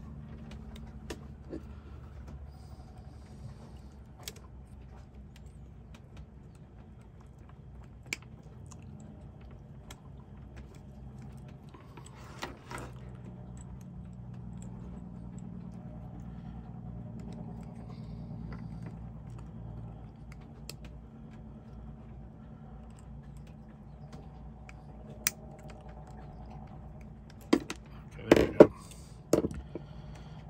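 Small metallic clicks and taps from needle-nose pliers and a screwdriver working the crimped metal barrel of an MC4 connector pin, scattered every few seconds over a steady low hum, with a cluster of louder knocks near the end.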